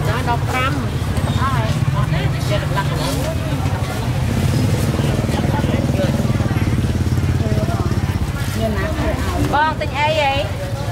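Market chatter: several people talking over one another, over a steady low engine rumble.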